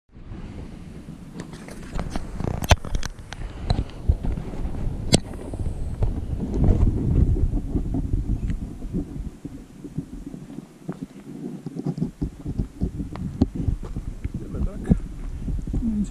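Low, irregular rumbling and knocking on a GoPro action camera's microphone, the wind and handling noise of the camera being carried and moved, with two sharp clicks in the first few seconds and many fainter ticks.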